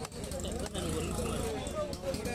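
A heavy cleaver chopping fish flesh on a wooden block: two sharp chops in the first second and a lighter one near the end, with people talking in the background.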